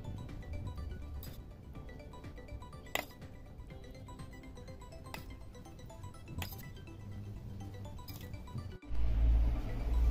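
Background music with a few sharp clinks of a metal fork against a glass baking dish as meat filling is pressed into eggplant halves. Near the end the sound cuts abruptly to a louder low rumble.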